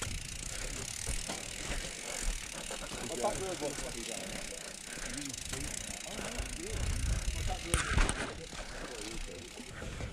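Trek Remedy 8 mountain bike rolling along a dirt trail, heard from a helmet-mounted camera as a steady rush of tyre and wind noise. A few louder knocks and rumbles from the bike come about eight seconds in.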